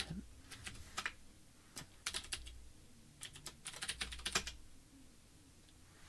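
Faint computer-keyboard typing in a few short runs of keystrokes, stopping about four and a half seconds in: a username and password being entered at a git login prompt in a terminal.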